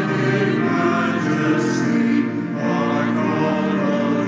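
A choir singing a hymn in held, sustained notes, with a short break between phrases a little over two seconds in.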